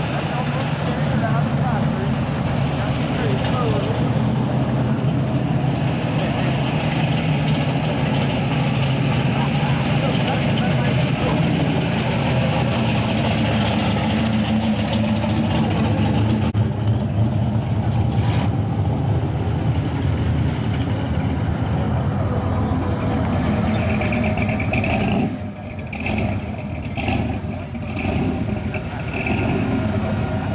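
Engines of street rods and classic cars running at low speed as they drive slowly past one after another, a steady low rumble that drops away and comes back unevenly about 25 seconds in.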